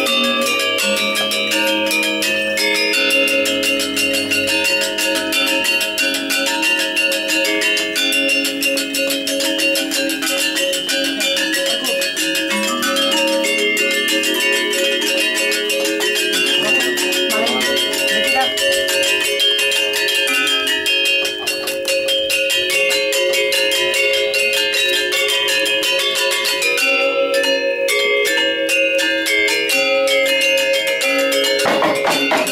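Balinese gamelan metallophones accompanying a wayang shadow-puppet play, struck in fast, dense runs of notes over steady ringing tones.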